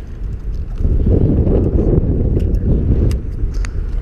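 Wind buffeting the camera microphone: a low rumble that swells about a second in and eases near the end, with a few faint ticks.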